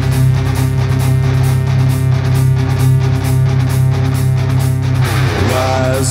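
Heavy metal song in an instrumental passage between vocal lines: distorted electric guitars and bass over a steady driving beat.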